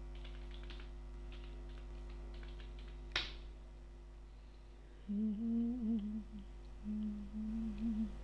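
Computer keys tapped lightly as a command is typed, with one sharper key click about three seconds in, over a steady electrical hum. From about five seconds a person hums a short wavering tune, pausing briefly near seven seconds.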